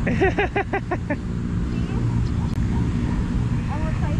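A short burst of laughter, about six quick ha's in the first second, over a steady low background rumble.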